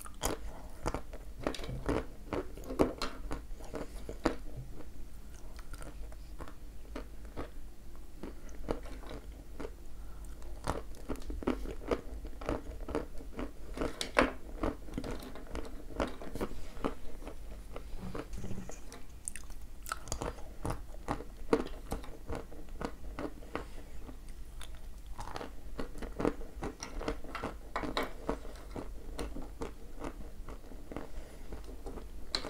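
A person biting and chewing thin chips of dry, dense edible clay (the 'ryzhik' or 'sunflower' variety), a run of many small crisp crunches with a few short lulls.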